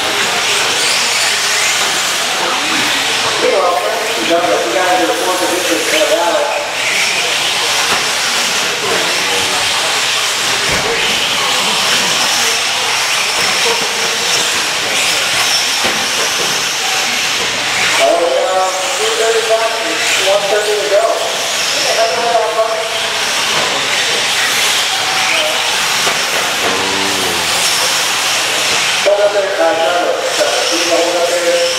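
A pack of 4x4 short-course RC trucks racing on an indoor dirt track: a steady hiss with a faint high whine from their motors and tyres, which goes on throughout. Indistinct voices come and go over it.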